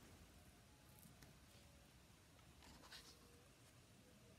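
Near silence: room tone, with faint paper rustles of a hardcover picture book being handled and its open pages turned toward the viewer, once about a second in and again near three seconds.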